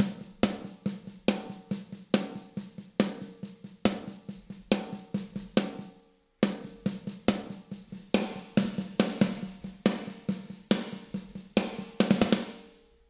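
Multitrack drum kit recording playing back a steady beat of snare and kick hits, through a simulated EMT-style plate reverb (Waves Abbey Road Reverb Plates plug-in). The playback cuts out briefly about halfway through, then starts again.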